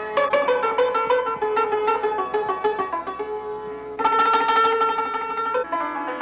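Persian santur, a hammered zither, struck with two light wooden mallets: a quick run of ringing notes, then a louder stroke about four seconds in whose notes ring on.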